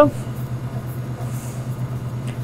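Steady low electrical hum of laboratory bench equipment, with a slight even pulsing.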